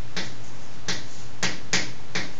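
Chalk on a blackboard: four sharp taps in two seconds as characters are written, over a steady low hum.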